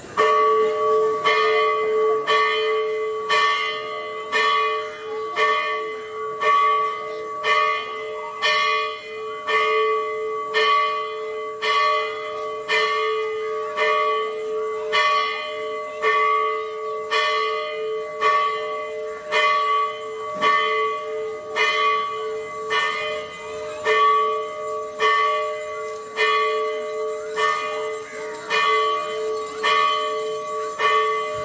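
A single church bell rung quickly and evenly, about three strikes every two seconds, each stroke's hum running on into the next.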